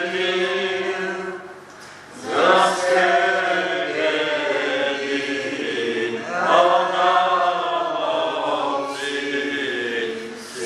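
A congregation singing a hymn together in long held notes, pausing briefly for breath about two seconds in before the next phrase begins.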